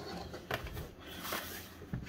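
Faint handling noise as a plastic laptop is picked up by its edges and turned over on a table, with a couple of soft taps.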